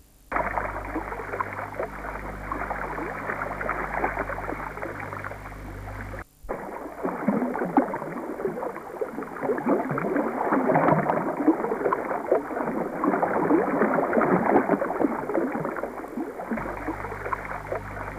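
Flowing, bubbling river water with a dense crackling texture and a low steady hum under it at first. About six seconds in, the sound breaks off for a moment and comes back without the hum.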